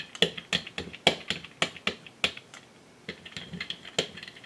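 Soft rubber brayer wound with elastic bands, rolled back and forth through a thin layer of wet paint on a craft sheet, giving an irregular run of sharp clicks, about three a second. The clicks ease off for a moment after about two seconds in, then pick up again.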